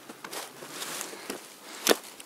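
Footsteps rustling through dry leaf litter, with small crackles and one sharp crack just before the end.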